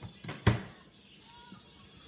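A single sharp knock about half a second in, followed by a short fade and a quiet stretch.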